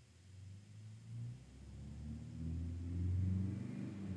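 A low rumble that swells over a few seconds, loudest near the end.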